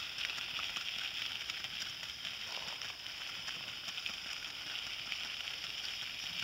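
A pony's hooves and the wheels of a light two-wheeled cart crunching on a gravel road as the pony moves along in harness: a steady run of small crackles over a constant high hiss.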